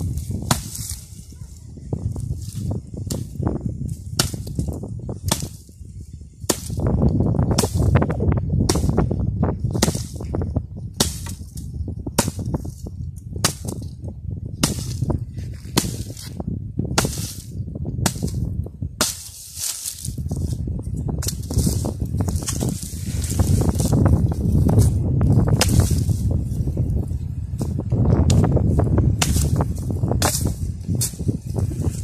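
A hand axe chopping at wooden sticks on the ground: a run of sharp strikes, roughly one or two a second, over a low rumble of wind on the microphone.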